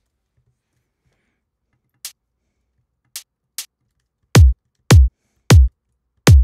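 Electronic drum samples played back one hit at a time: after a silent start, three short, quiet hi-hat ticks, then three loud kick drum hits, each dropping quickly in pitch into the deep bass, at uneven intervals.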